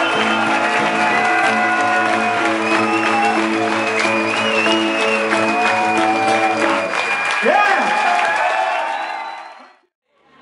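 Live acoustic band ending a song: voices hold long sung notes over acoustic guitar and steady chords, with the audience clapping and cheering. The sound fades out near the end.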